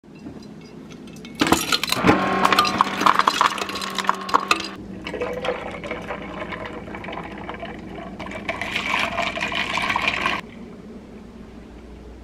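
Liquid poured into a glass mason jar, with glass clinks through the first pour, then a second steady pour of protein shake into the jar that cuts off suddenly about ten seconds in.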